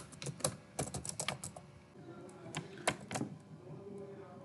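Computer keyboard keys clicking in a quick run of typing for about a second and a half, followed by a few single clicks near the three-second mark.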